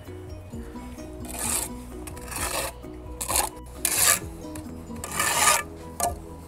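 Brick trowel scraping through and spreading mortar, about five scraping strokes roughly a second apart, the last and longest near the end, over background music.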